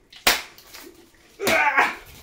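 A sharp snap about a quarter second in from the plastic tab of a Funko Soda can being pried at by fingers that keep slipping off, the can refusing to open. About a second later comes a short burst of voice.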